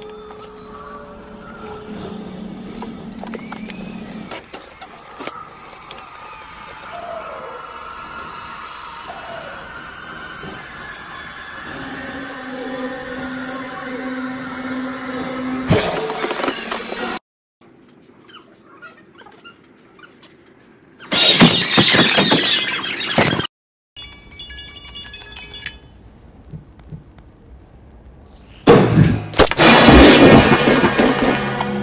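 Horror-film soundtrack: eerie sustained tones build slowly for about fifteen seconds. Then three sudden loud jump-scare blasts cut in, with abrupt drops to near silence between them.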